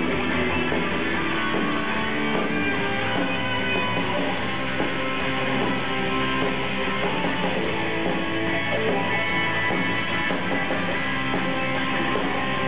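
Live rock band playing, electric guitar to the fore over drums, filmed from the audience. The music is steady and loud throughout, with a dull, muffled top end.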